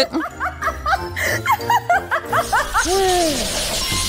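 A woman giggling in quick, short laughs over cheerful background music, followed by a whoosh sound effect near the end.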